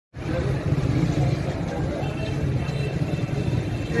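Outdoor street noise: a steady low rumble with indistinct voices mixed in.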